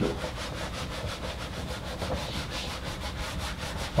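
Whiteboard eraser scrubbing back and forth across a whiteboard in a steady run of quick strokes.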